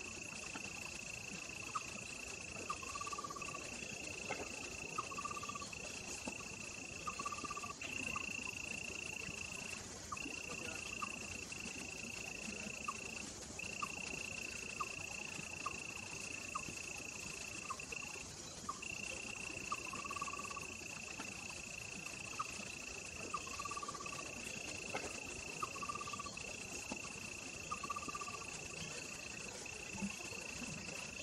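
Insect chorus: a steady high-pitched drone that breaks off briefly every few seconds, over a higher hiss, with short chirping calls repeating every second or two and scattered faint clicks.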